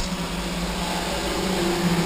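Steady hum and rush of a fan motor running. A low drone holds throughout, and a second, higher steady tone comes in about a second in.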